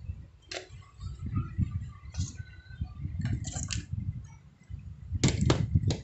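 Light clicks and small metallic clinks as a micro USB charging port and wire are handled in the jaws of diagonal cutters, over a low rumbling handling noise. The clicks come in a few scattered groups, the loudest cluster near the end.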